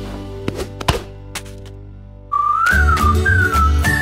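Cartoon soundtrack: a few light clicks and knocks over fading music, then, a bit over two seconds in, a short whistled tune that glides up and down over a bouncy low beat.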